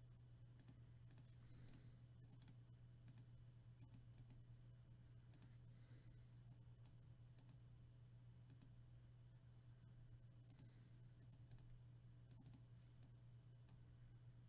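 Near silence: faint, scattered clicks of a computer mouse and keyboard, over a steady low hum.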